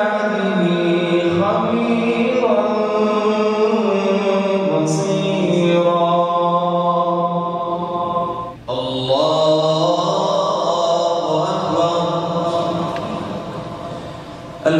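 A man's voice reciting the Quran in the slow, melodic tajweed style over the mosque microphone. One long drawn-out phrase breaks off for a breath about eight and a half seconds in, then another long phrase follows and fades toward the end.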